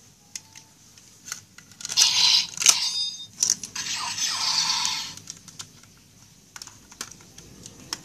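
Plastic DX Sakanamaru toy sword being handled and folded: scattered sharp clicks of its plastic parts, with two loud hissy bursts, one about two seconds in and one about three and a half seconds in, lasting more than a second each.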